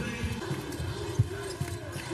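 Basketball being dribbled on a hardwood court, a few sharp bounces, the clearest about a second in, with sneakers squeaking on the floor over steady arena crowd noise.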